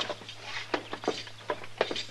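Radio sound-effect footsteps walking off, a separate step about every third of a second, over a steady low hum.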